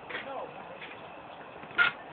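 Faint voices with a short, loud, sharp burst near the end.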